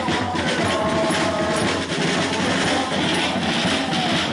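Snare drum and tambourines played in a rapid beat by street drummers, with several held, steady tones sounding over the drumming.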